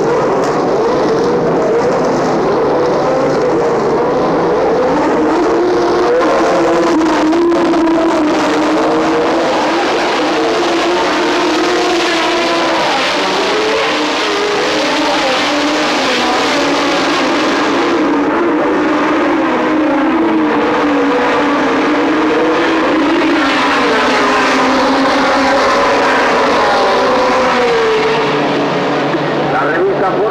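Several 1970s Formula One racing engines running and revving together, their notes overlapping and rising and falling.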